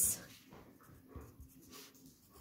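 Faint scratching of a pencil writing numbers on graph paper, in a few short strokes.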